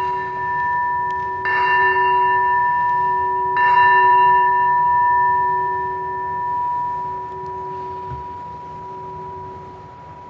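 A consecration bell struck during the elevation of the chalice, ringing with one clear tone over a few fainter ones. It is struck again about one and a half seconds in and again about three and a half seconds in, then dies away slowly. The bell marks the elevation at the consecration.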